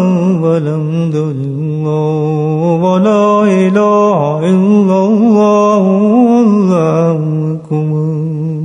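A man's voice chanting a slow, wavering melody, one sustained line bending up and down in pitch, with a brief break near the end.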